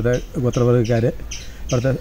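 A man talking, in phrases broken by short pauses, one about a second and a half in.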